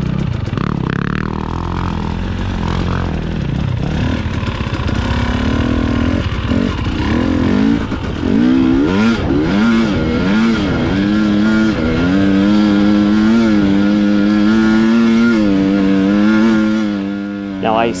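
Husqvarna TX300i two-stroke enduro bike engine climbing a loose sand hill, revving up and down for several seconds, then held at steady high revs on full throttle from about twelve seconds in, easing off just before the end.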